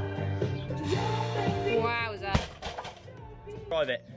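Background workout music with a steady beat stops about two seconds in. It is followed at once by a single heavy thump as a loaded barbell comes back down onto the rubber floor after a deadlift. Voices come in near the end.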